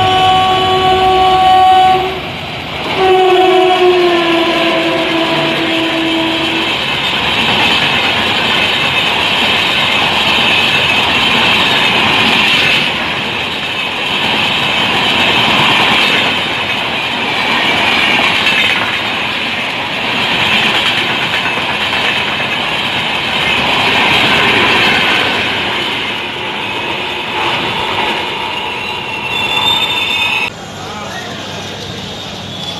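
Electric passenger train sounding its horn twice, the second blast dropping in pitch as the locomotive reaches and passes. Then the coaches rush by at high speed with a loud steady rumble and rattle of wheels on rail.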